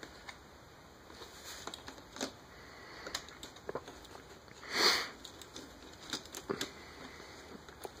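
Scattered small clicks and taps of plastic parts on the Excellent Toys Ptolemy super-deformed Optimus Prime figure as its pieces are moved and snapped into place by hand, with a short breathy rush about five seconds in.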